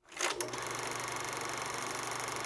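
Vintage cine camera running: a steady, fast mechanical whirring clatter that starts abruptly.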